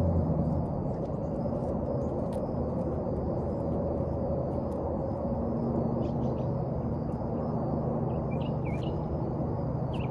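Steady outdoor ambience: a low hum and rumble throughout, with a bird chirping several times near the end.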